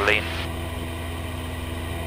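Cessna 172P's four-cylinder Lycoming engine and propeller droning steadily in flight, heard from inside the cabin.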